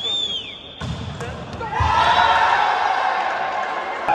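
Volleyball rally: a couple of dull thuds of the ball being struck, about one and two seconds in, followed by loud, overlapping shouts from players and onlookers.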